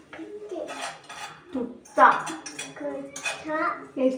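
Stainless steel pot and utensils clinking and scraping as they are handled, with a few sharp metal clinks. A short voice is heard about halfway through.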